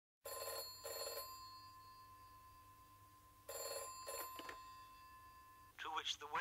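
Telephone bell ringing in a double-ring pattern: two short rings, a pause of about two seconds, then two more, the bell tone hanging on faintly between them.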